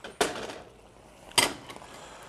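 Two clanks of metal pans being handled on a stovetop, about a second apart, each ringing briefly.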